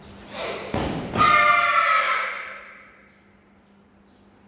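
Children's kiai shouted together in a team karate kata, a loud pitched shout about a second in that fades over a second or so. It comes right after a swish of a fast movement and a thud or two on the mat.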